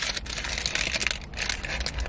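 Paper taco wrapper crinkling and rustling as it is opened and handled, a rapid run of small crackles.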